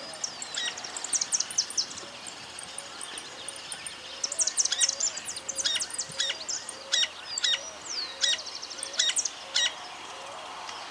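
Several wild birds singing together: many quick high chirps, sweeps and short trills, thickest in the second half, over a soft lower note that repeats about twice a second.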